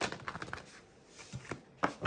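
A deck of tarot cards being shuffled by hand: a quick run of card-on-card flicks at the start, then soft sliding and a few light separate taps.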